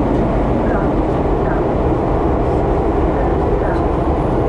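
Lisbon Metro train running, a loud, steady rumble heard from inside the carriage.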